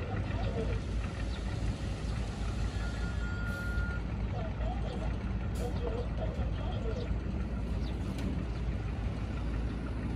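Dump truck's diesel engine running steadily under load, driving the hydraulic hoist as the tipper bed rises to dump its load of soil. Voices come and go over it, and a single short beep sounds about three seconds in.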